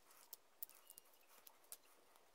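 Light clicks and taps of thin wooden strips being handled and set down on a plastic cutting mat, about half a dozen in two seconds.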